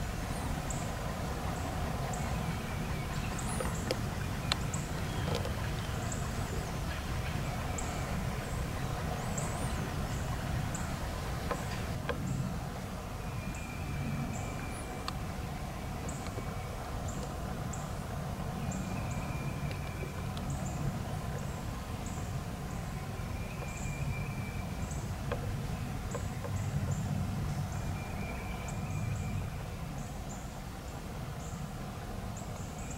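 Woodland ambience with small birds calling: a steady scatter of short, high chips, and in the second half a short level whistled note repeated every four to five seconds, over a low steady rumble.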